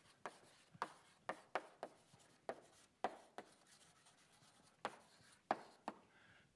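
Chalk writing on a blackboard: about a dozen short, sharp taps and brief strokes at an irregular pace as a phrase is written out by hand, with quiet gaps between.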